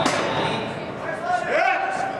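A single sharp metallic clank of iron barbell plates being handled on the bar, ringing briefly in a large hall, followed about a second and a half in by a man's voice calling out.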